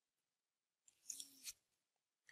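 Near silence, with one brief faint sound about a second in that ends in a small click.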